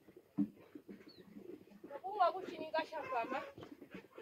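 Talking, from about halfway through, after a single knock shortly after the start.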